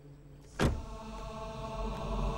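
A sudden sharp hit about half a second in, then a low droning film score with steady held tones that grows slowly louder.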